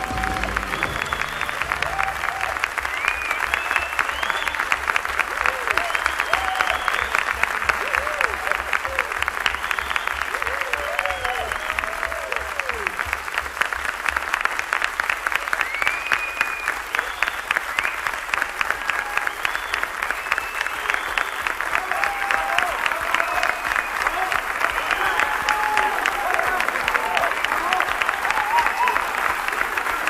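Studio audience applauding and cheering after a rock song, with shouts and whoops rising over dense, sustained clapping.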